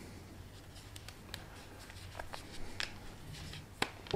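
Faint rustling and scattered small clicks of hands wrapping a cotton wool pad over a bolt head and fitting a rubber band around it, with a sharper click near the end.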